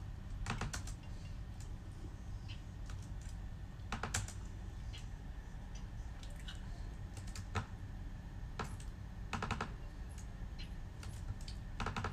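Typing on a MacBook laptop keyboard: irregular bursts of several quick key clicks, with pauses of a second or more between them.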